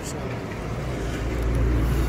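A low, steady rumble that grows a little louder about halfway through.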